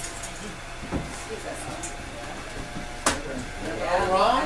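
Electric potter's wheel running with a steady hum under quiet background talk, and a single sharp click about three seconds in.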